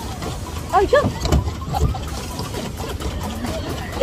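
A woman's few short vocal sounds, the kind heard in brief laughter, about a second in, over a low steady rumble on the phone's microphone.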